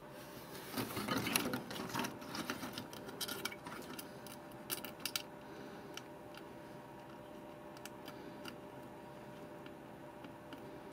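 Small clicks, taps and rustles from fingers handling a replacement chip and fitting it into a TV circuit board, busiest in the first two seconds and dying away about halfway through. A faint steady hum runs underneath.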